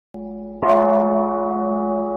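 A large bell struck once about half a second in. Its ringing sustains over a steady droning musical tone that begins just before the strike.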